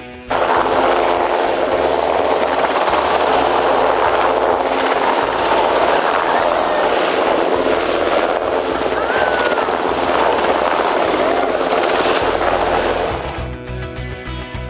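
Sikorsky S-92 search and rescue helicopter flying low nearby: loud, steady rotor and turbine noise that cuts in suddenly just after the start and falls away about a second before the end.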